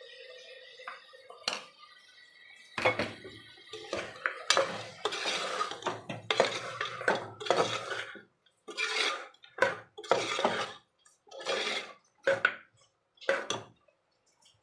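A metal spoon scraping and stirring chunks of mutton in a metal pressure cooker. Scattered clicks come first, then from about three seconds in a run of dense scraping strokes, then separate strokes roughly a second apart.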